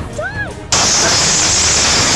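A high voice or melody in short arching notes, cut off about two-thirds of a second in by a sudden loud, steady rush of noise that holds to the end.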